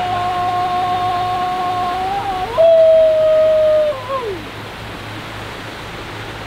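A man's voice holding a long, loud yell in two held notes. The second is louder and slightly lower, starts about two and a half seconds in, and falls away about four seconds in. Steady rushing of a rock waterfall continues underneath.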